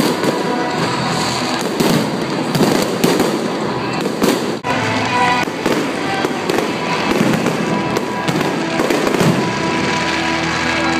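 Aerial fireworks display going off: a loud, continuous series of bangs and crackling bursts, many to the second, with no pause.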